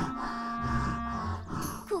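Cartoon Tyrannosaurus rex sound effect: a low, drawn-out distressed call that swells twice, from a dinosaur crying with a mask stuck over its head.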